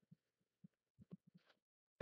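Near silence broken by about six faint, soft keyboard keystrokes as text is typed.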